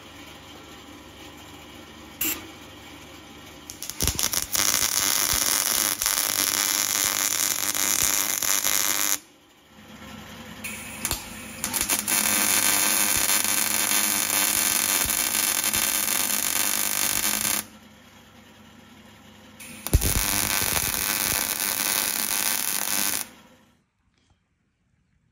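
Electric arc welding on a steel bracket: the arc crackles and spits in three separate runs, each several seconds long, with a low hum between them. This is welding the bracket after tacking it in place.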